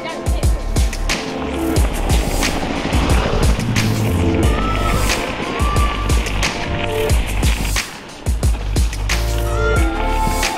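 Background music over the steady rolling noise of bicycle tyres on a gravel road.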